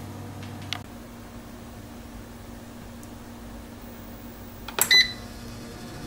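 Cook's Essentials air fryer's control panel giving a short electronic beep with a button click about five seconds in, as it is set to cook. A low, steady hum runs underneath.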